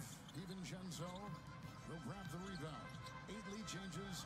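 Faint NBA broadcast audio from the game footage: a basketball being dribbled on a hardwood court, under a commentator's voice and arena background.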